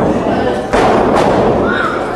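A wrestler is taken down onto the ring mat: a short hit at the start, then a loud thud about three quarters of a second in as the body lands on the ring, with crowd voices around it.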